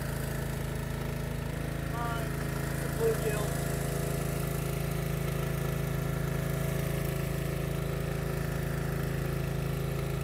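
Small engine on an electrofishing boat running steadily at a constant pitch, an even mechanical hum.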